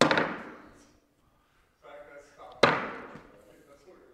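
Two cornhole bags landing on a wooden cornhole board about two and a half seconds apart, each a sharp thud that rings out with echo. A short bit of voice comes just before the second.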